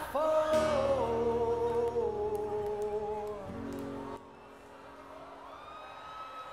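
Male singer holding a long sung note with vibrato over acoustic guitar in a live performance. The music drops away about four seconds in, leaving a faint held tone.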